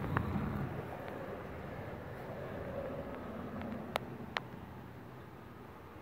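Faint outdoor background noise, with two light, sharp clicks about four seconds in.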